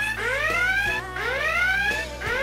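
Whooping alarm sound effect: a rising tone repeated about once a second, sounding a comic 'bullshit alert'.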